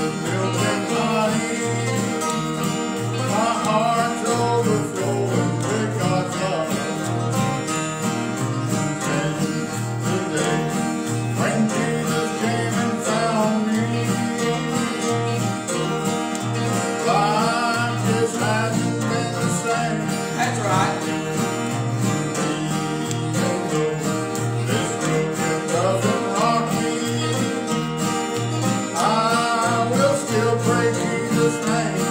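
A country gospel song played live on acoustic guitars, strummed to a steady beat, with a man singing lines into a microphone at intervals.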